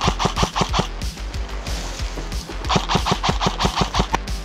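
Airsoft guns firing rapid bursts of shots, several a second, in a run in the first second and another near the end, over background music with a steady bass.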